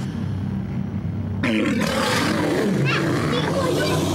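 Children growling and shrieking without words, breaking out suddenly about a second and a half in over a low steady hum.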